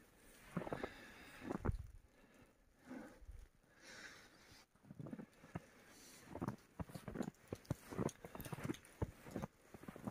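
Footsteps in thick fresh snow, faint, at an irregular walking pace that quickens in the second half.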